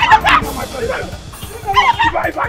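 Excited yelling and crying out from people breaking up a scuffle, with the loudest, highest cry in the first half second, over background music.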